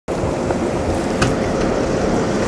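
Steady outdoor rush of wind buffeting the microphone along with street noise, heaviest in the lows, with a few faint clicks.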